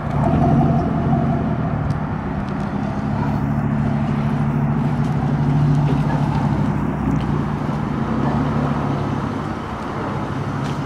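Chevrolet Silverado single-cab pickup's engine running at low speed with a steady exhaust note as the truck rolls slowly.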